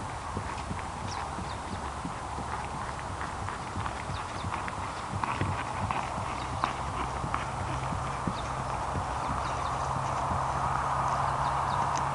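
A ridden pony's hoofbeats on a dry grass paddock, getting louder about halfway through as it passes close by.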